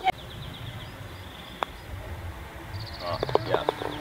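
A putter striking a golf ball once, a single sharp click about a second and a half in, over a low wind rumble on the microphone. A bird trills faintly twice.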